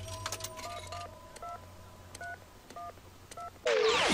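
A payphone's touch-tone keypad being dialed: about six short two-tone beeps at uneven intervals over a low hum. Shortly before the end, a loud burst of sweeping, gliding electronic sound cuts in.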